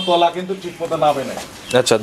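A man's voice talking, with no words made out; the hand-milking itself is not clearly heard.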